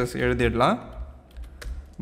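Typing on a computer keyboard: a quick run of keystroke clicks in the second half, after a short spoken word at the start.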